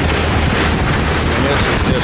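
Wind buffeting the microphone and water rushing along the hull of a motor yacht running at about 14 knots, over a steady low engine hum.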